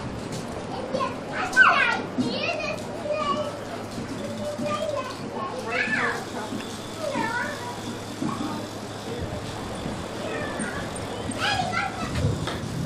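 Young children's voices: scattered high-pitched calls and babble without clear words, over a steady background noise.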